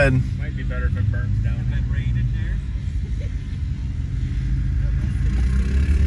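Steady low vehicle rumble, with faint voices in the background.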